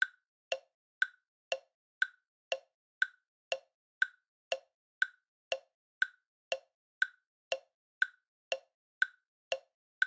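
Clock tick-tock sound effect: even, alternating higher and lower ticks, two a second, marking time passing.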